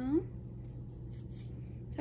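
Cross-stitch fabric in a plastic embroidery hoop rustling softly as it is handled and held up, over a steady low hum.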